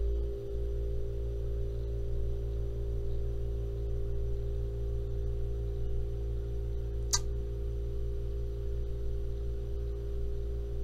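Soft, sustained background music from the anime soundtrack: a held chord of a few steady tones that does not change. A single sharp click sounds about seven seconds in.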